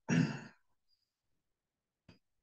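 A person sighing once, a short breathy sigh of about half a second close to a headset microphone, followed by silence.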